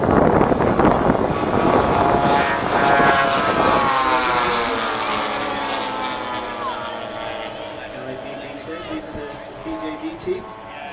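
Engines of several radio-controlled model warbird aircraft flying past in formation, loud at first, then dropping in pitch and fading as they pull away.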